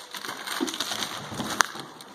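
A dog tearing and chewing at a gift's wrapping paper: irregular crinkling and ripping of paper, with one sharp click about one and a half seconds in.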